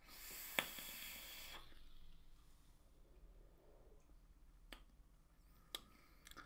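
A draw on a rebuildable dripping atomiser (Requiem RDA) with a 0.3-ohm coil fired at 65 watts: a steady hiss of air pulled through the atomiser as the coil fires, lasting about a second and a half, with a single click about half a second in. Then near silence with a couple of faint ticks.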